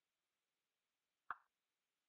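Near silence, broken once by a single short, faint click a little over a second in.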